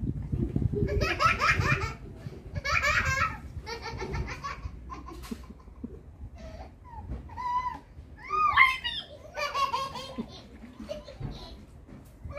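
Small children laughing: several bursts of high-pitched, pulsing belly laughs and giggles, the loudest in the first few seconds and another run a little past the middle.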